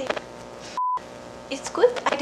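A short electronic beep at one steady mid pitch, about a quarter second long, a little under a second in; the rest of the sound cuts out around it. Near the end a woman's tearful voice comes back in.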